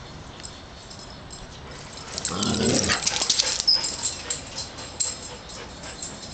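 Two dogs at play, a giant schnauzer and a greyhound mix: about two seconds in, one dog gives a short, low, wavering vocal sound, overlapped by a quick run of sharp clicks and rattles. A brief high squeak comes near the middle.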